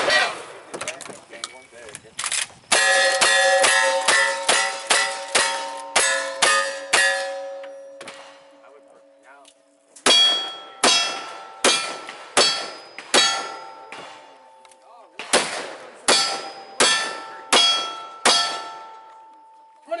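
Strings of rapid gunshots, each followed by steel plate targets ringing: a run of about ten shots, a short pause, then two more strings of about five shots fired from a single-action revolver.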